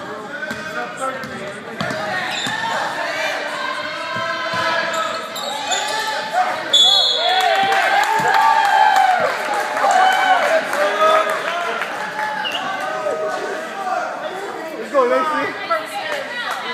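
Basketball bouncing on a gym floor while many voices shout and talk across a large hall, with the voices loudest in the middle.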